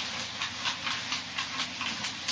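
Whiteboard eraser wiping marker off a whiteboard in quick back-and-forth strokes, about four a second.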